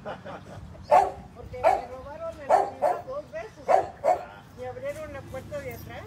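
A dog barking at visitors at the gate: about six sharp barks in a little over three seconds, the first the loudest.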